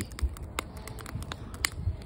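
Wood fire burning in a steel fire pit, with scattered sharp crackles and pops, several a second, over a low rumble.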